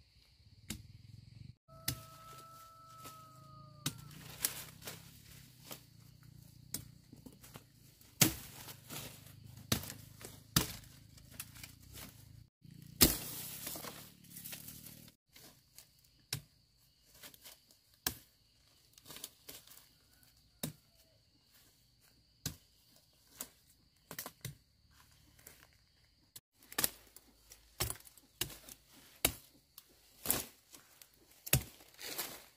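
Machete hacking through woody cassava stems: a series of sharp chops at irregular intervals, with the rustle of the leafy stalks being handled. A faint steady insect buzz sits behind.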